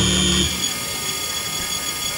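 A jazz band holding a chord, which cuts off sharply about half a second in. After that comes steady background noise with a thin constant high whine.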